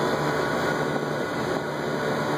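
Trane Voyager rooftop air-conditioning unit running: a steady rush of air with a constant low hum.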